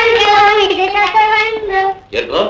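A child singing in a high voice, holding a long line whose pitch wavers slightly, which stops near the end.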